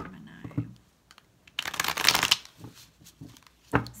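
A deck of tarot cards being shuffled: a quick, dense rattle of card flicks about halfway through, lasting under a second, with a few light taps on the table before and after it.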